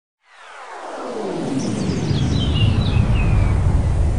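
Logo intro sound effect: a swelling rumble that grows louder, with falling pitch sweeps and a few short high gliding tones in the middle.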